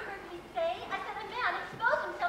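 Indistinct chatter of young voices, several people talking at once.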